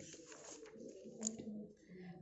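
Faint rustle of a paper textbook page being turned, with one light click about a second in and a faint low steady tone near the end.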